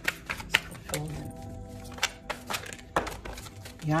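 Soft background music with held notes, over a scatter of irregular sharp clicks and taps.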